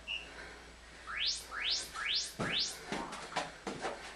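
Interval timer for a Tabata workout: a short high beep, then four quick rising chirp tones marking the start of a work interval. From about halfway in, the thuds of feet landing on the floor follow as the exercise begins.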